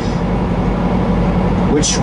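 Steady engine and road noise inside a truck cab cruising on the highway, a constant drone with a low hum under it. A man's voice returns near the end.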